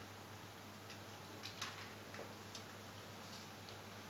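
Quiet room tone with a steady low hum and a few faint, irregular clicks.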